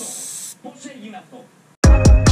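Gravity-feed airbrush spraying paint with a steady high hiss that cuts off about half a second in. Near the end, loud electronic music with a heavy beat starts abruptly.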